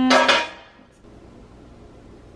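A spoken word trails off in the first half second, then only faint steady room tone.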